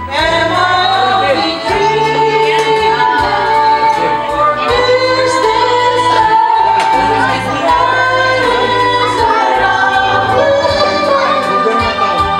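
Two women singing a duet into microphones over instrumental backing music with a steady bass line, holding long sung notes.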